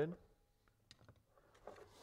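Faint plastic clicks and a short scraping rustle as a plastic trim tool pries up the switch-panel trim of a Ford F-250 Super Duty driver's door panel, with its retaining clips letting go near the end.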